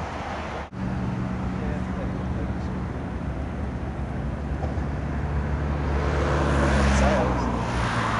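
A steady low engine drone with a hum, starting just after a brief dropout about a second in and thinning out near the end as a rush of broad noise swells.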